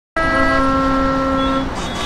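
Street traffic with a vehicle horn held for about a second and a half; a second horn tone cuts off about half a second in.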